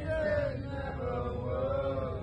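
Young men singing a drawn-out chant together, holding long notes, over a low steady rumble.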